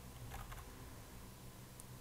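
Faint computer-keyboard typing: a few soft key clicks as a word is typed, over a low steady hum.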